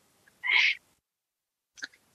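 A single short breath noise from a person, lasting about a third of a second, with a faint mouth click near the end.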